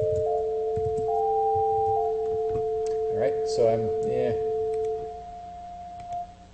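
Two electronic sine tones sounding together: a steady lower tone and a higher one that steps upward in pitch several times, then drops and settles on one note. This is a synthesized sinusoid and its copy transposed by a delay-line pitch shifter. The steady tone stops about five seconds in.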